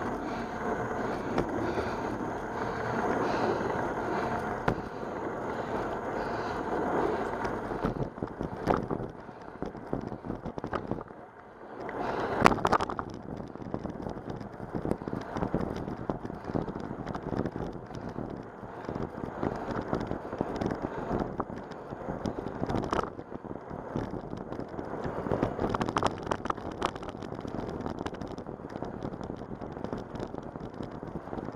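Wind rushing over the microphone while riding a bicycle along a cracked asphalt road, with frequent small clicks and rattles from the bumps and a brief lull about eleven seconds in.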